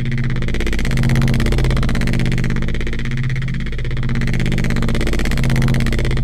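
A neuro bass synth note held low and steady, run through a chorus, saturator and CamelCrusher distortion effects chain, with a beastly, gritty tone. Its brightness and loudness slowly swell and ebb twice.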